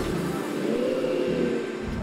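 Racing superbike engine catching on a push-start, its revs rising and falling once.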